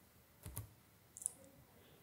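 A quiet room-tone pause with two faint clicks, one about half a second in and a sharper one just past a second in.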